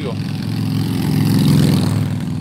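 A motor vehicle engine running steadily close by, growing louder to a peak about a second and a half in, then easing off.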